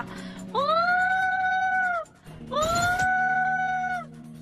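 A woman's voice giving two long, high held tones, each sliding up into a steady pitch and dropping off at the end. They are sounds she makes to echolocate the child in front of her by ear (human sonar).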